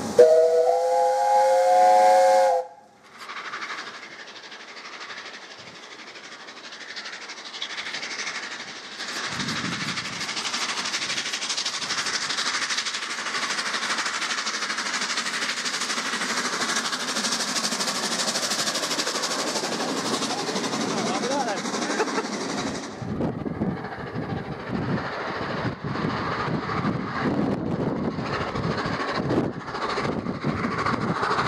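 Whistle of LNER Peppercorn A1 Pacific 60163 Tornado, blown once for about two and a half seconds with several notes sounding at once, and cut off abruptly. Then the three-cylinder steam locomotive is heard working hard as a steady rush of exhaust and steam, with its exhaust beats coming through unevenly near the end.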